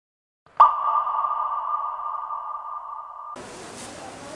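A single electronic ping sound effect, like a sonar ping, struck about half a second in and ringing as it slowly fades. It is cut off sharply a little after three seconds by outdoor background noise.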